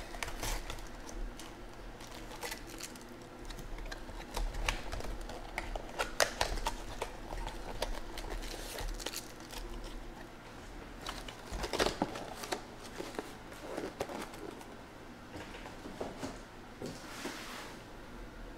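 Hands handling a sealed trading-card box: plastic shrink wrap crinkling as it is pulled off, then cardboard and foil card packs rustling and clicking as the packs are taken out and set down. Irregular small clicks and crinkles, with a few louder bursts of rustling.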